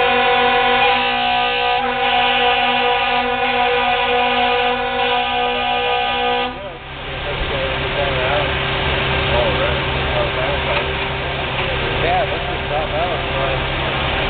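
A loud air horn sounds a chord of several steady notes, held for about seven seconds and then cutting off suddenly. Afterwards, steady vehicle engine noise continues.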